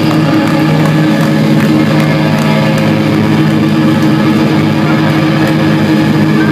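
Loud, steady drone of an electric guitar rig sounding through the stage amplifiers, a held low chord-like hum with no drums.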